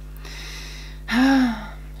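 A woman's audible breath in, then a short voiced exclamation whose pitch rises and falls, a gasp of admiration at a pretty makeup package.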